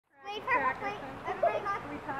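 Children's high-pitched voices talking and calling out, the words not made out.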